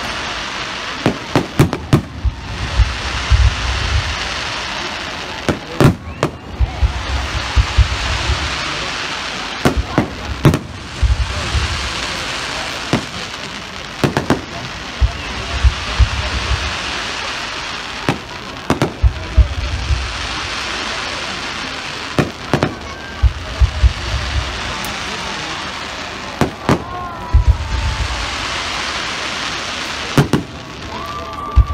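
A fireworks display: aerial shells bursting in loud, sharp bangs, often several in quick succession, with low booms every few seconds and a steady hiss between the bursts.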